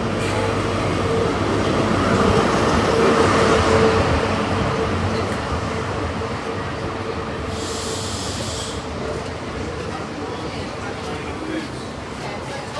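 Class 43 HST diesel power car drawing slowly into the platform and passing, loudest about three to four seconds in, followed by the coaches rolling by. A steady high tone holds through most of it, and there is a short hiss about eight seconds in.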